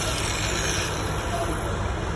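Electric angle grinder running against the steel of a skid steer bucket: a steady rough grinding noise as a crack is ground out in preparation for welding.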